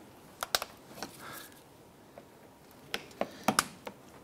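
Scattered sharp plastic clicks and snaps from a plastic trim tool prying the centre pin out of a plastic push-pin clip under a car's front bumper cover: a couple early, then a quick cluster near the end.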